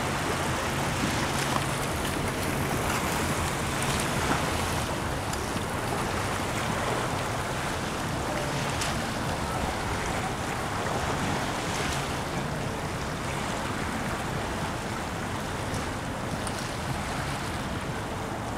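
A steady rush of wind and water washing along the shore, with a faint low hum underneath.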